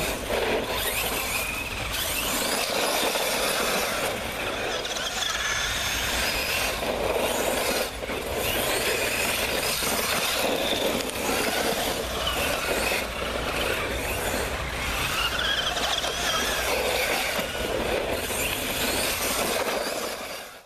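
Radio-controlled truck driving over a dirt path: a whining motor and drivetrain with gritty tyre noise, the whine rising and falling as it speeds up and slows.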